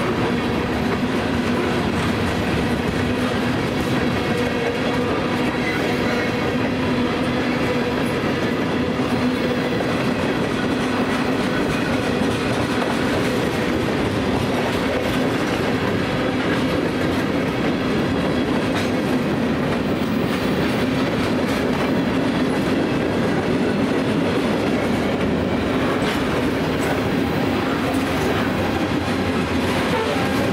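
Freight train of covered hoppers and tank cars rolling steadily past at speed, its wheels running over the rails in a continuous rumble.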